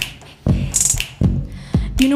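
Live band playing a sparse, drum-led groove between sung lines: a few deep kick-drum hits and one sharp, bright hit near the middle, with little else sounding.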